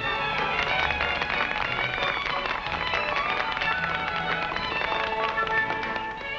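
A small crowd applauding, a dense patter of hand claps, over orchestral background music with strings. The clapping eases off near the end.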